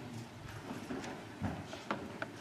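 Scattered footsteps and soft knocks of several people walking across a floor, with a couple of sharp clicks near the end.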